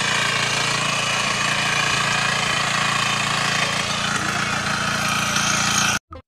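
Small engine of a walk-behind mini tiller (rotary cultivator) running steadily.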